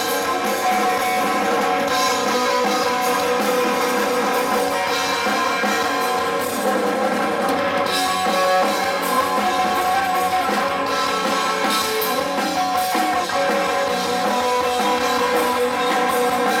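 Live rock band playing an instrumental passage without vocals: electric guitar, electric bass and drum kit through Marshall amplifiers, steady and loud, with little deep bass.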